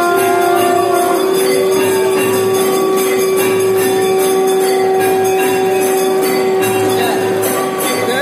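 Temple bells ringing continuously and unevenly during a Hindu aarti, over a long, steady held tone, with a second, higher tone joining about halfway through.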